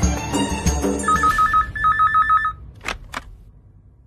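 Desk telephone ringing twice with a fast electronic warbling trill as background music fades out, followed by two short clicks.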